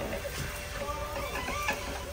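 Desktop thermal label printer running steadily, feeding out a continuous strip of shipping labels.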